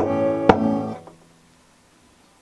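Acoustic guitar struck twice, once at the start and again about half a second in; the chord rings and dies away after about a second, leaving a quiet pause.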